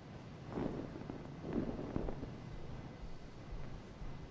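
Hushed church room tone with a few soft, muffled knocks and rustles of movement, about half a second in and again between one and two seconds in, ending in a small sharp click.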